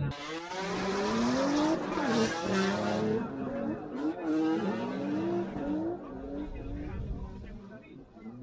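Drift cars' engines revving up and down in quick swings as they slide, with tyre squeal, strongest in the first three seconds.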